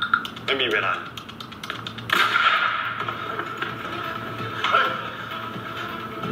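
Drama-trailer soundtrack: a short spoken line in Thai, then background music with a steady held tone from about two seconds in.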